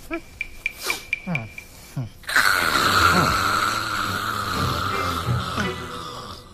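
Exaggerated comedic snoring. First comes a run of quick, even ticks with falling sweeps, then about two seconds in a loud, long rasping snore that lasts over three seconds and fades near the end.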